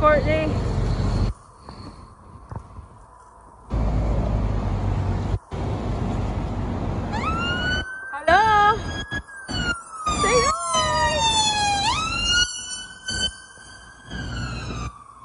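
Emergency vehicle siren wailing, starting about seven seconds in: a long tone that slowly falls in pitch and then sweeps back up near the end. Before it, wind buffets the microphone in gusts.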